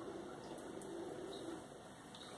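Faint, low bird cooing, two soft phrases, heard in a quiet room.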